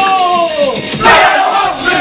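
A group of performers shouting and yelling together over a hip-hop backing track: one long falling yell, then a louder burst of group shouting about a second in.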